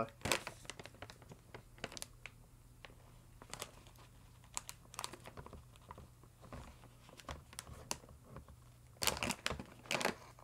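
Snack bag being crinkled and pulled at while being worked fully open, with scattered crackles that get busier near the end.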